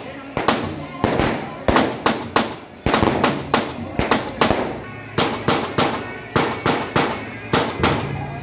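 Firecrackers going off in a string of separate loud bangs, about two to three a second at uneven spacing, each with a short echoing tail.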